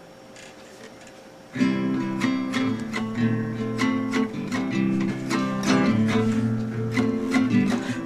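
Guitar strummed in a steady rhythm of chords, the A, G and F7 announced for the song, starting about a second and a half in after a faint hum.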